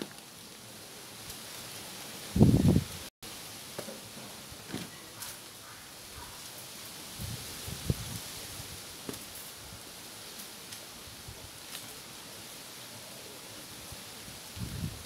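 Someone eating a ripe mango close to the microphone, with faint short mouth sounds from biting and sucking the flesh over a steady soft outdoor hiss of rustling leaves. A loud low bump sounds about two seconds in.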